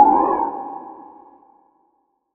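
Synthesized logo sound effect: a ringing electronic tone that starts loud and fades away over about a second and a half.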